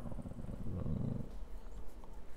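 A man's voice trailing off into a low, creaky hesitation sound, a drawn-out 'uhh' in vocal fry, which fades out a little over a second in.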